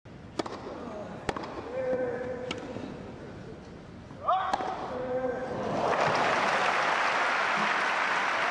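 Tennis rally: a ball struck by rackets four times, sharp pops a second or two apart, the first one the serve. About six seconds in, crowd applause rises and continues.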